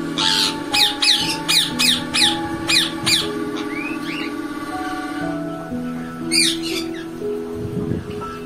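Shrill, downward-sliding squawks from lutino (yellow) Indian ringneck parakeets: a quick burst of about eight in the first three seconds and a pair more later, over background music of sustained notes.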